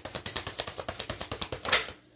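Tarot cards being shuffled by hand: a fast run of dry clicks of card edges, about a dozen a second, ending in a louder swish near the end as the shuffle finishes.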